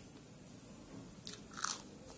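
Crisp crunching bites into a raw green chilli, a short crunch about a second in and a louder one just after.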